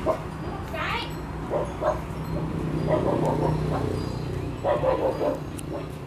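A dog whimpering and yipping, with short high calls now and then, one rising sharply about a second in, over a steady low hum.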